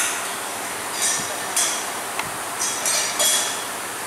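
Short metallic clinks and rasps, five or six of them spread over a few seconds, from a hand wrench working the wheel nuts of a car wheel that is being refitted.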